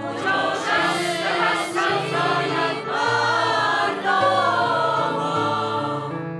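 Mixed choir singing a Persian song in several sustained phrases, over steady low notes from the accompaniment.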